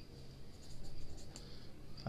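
Pen writing on a ruled notebook page: a run of short scratching strokes as a word is written, louder from about a third of the way in.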